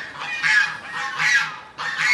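Three short, hoarse, honking animal calls in a row.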